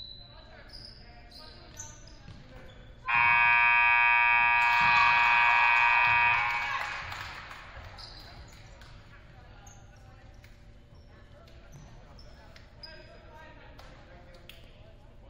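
Gymnasium scoreboard horn sounds one long steady blast of about three and a half seconds as the game clock runs out, ending the period. It rings on in the hall as it dies away. Short high sneaker squeaks on the hardwood come before and after it.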